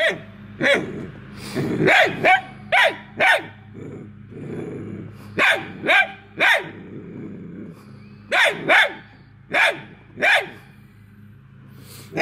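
A dachshund barking repeatedly at a squirrel caught in a wire live trap: sharp barks in quick clusters of two or three, about fourteen in all, with short pauses between clusters.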